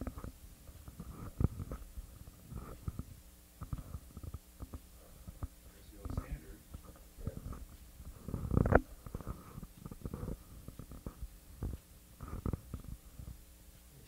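Irregular low thumps and rustles in the room, scattered through the stretch, with the loudest cluster a little past the middle.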